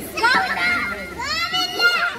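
Children's voices: young children talking and calling out in high voices, loudest near the end.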